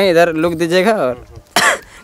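A man's voice making long, drawn-out, wavering sounds in a sing-song way, followed by a short hiss-like burst about one and a half seconds in.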